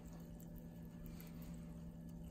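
Faint soft crackle of sparkling mineral water fizzing in a plastic cup, its bubbles popping, over a steady low hum.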